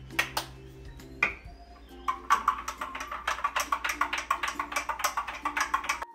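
A spoon stirring a protein shake in a drinking glass, clinking fast against the glass at about eight clicks a second, over background music. A few separate knocks come in the first second and a half.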